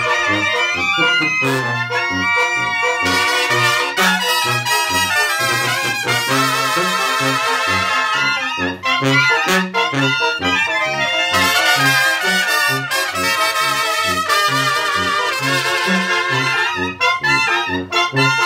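A live Mexican brass banda playing: trumpets, trombones and clarinets carry the tune over a steady, rhythmic tuba bass line and a beat from the tambora bass drum and snare drums.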